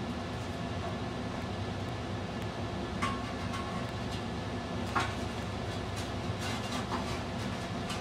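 Steady low mechanical hum in a studio, with a few light clinks of bisque-fired ceramic sections being set onto a steel rod, about three and five seconds in.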